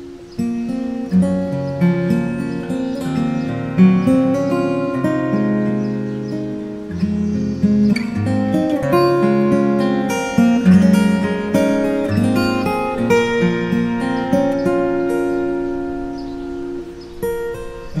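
Larrivee OM steel-string acoustic guitar played fingerstyle in CGDGAD tuning: a slow Celtic waltz, with a plucked melody over ringing low bass notes.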